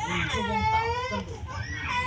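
A child's high-pitched, drawn-out whining cry lasting about a second, its pitch bending down and back up, followed by more high voices near the end.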